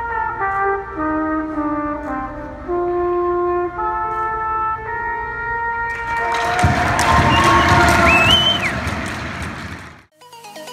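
A solo trumpet plays the last phrases of a slow melody in a large, echoing rink. About six seconds in, crowd cheering and clapping break out over the final note, with a shrill whistle from the crowd a couple of seconds later.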